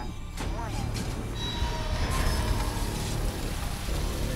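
Film sound design of an offshore drilling rig's well blowing out: a deep, steady rumble with a rush of noise that thickens from about two seconds in, mixed under a dramatic music score. A brief voice fragment is heard about half a second in.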